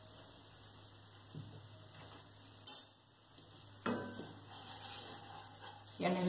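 A wooden spoon knocking and scraping in a non-stick pan while stirring flour in hot fat. A sharp click comes about two and a half seconds in, then a knock with a short ring from the pan, followed by scraping.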